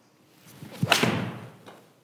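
Mizuno Pro 223 forged iron striking a golf ball off a hitting mat: a rising rush of the swing, then one sharp crack just under a second in, with the sound dying away over the next half second.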